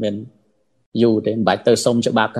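Speech only: a man talking, with a pause of about half a second near the start.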